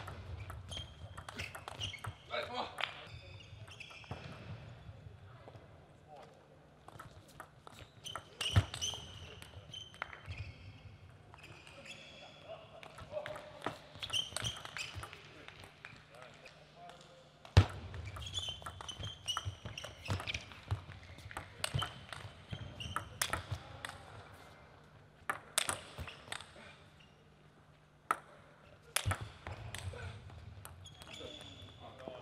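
Table tennis ball struck back and forth between bats and bouncing on the table in several quick rallies of sharp clicks, with short pauses between points.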